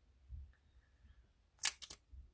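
Three sharp clicks in quick succession near the end, after a soft low thump earlier on, over quiet room tone.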